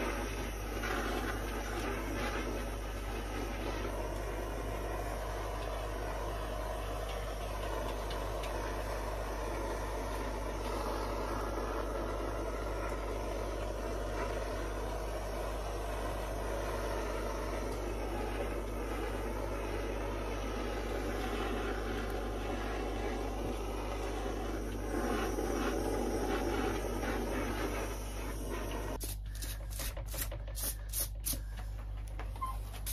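Handheld gas blowtorch burning steadily, a continuous rushing hiss of flame as it singes loose fibres off oak deadwood. It cuts off abruptly about a second before the end.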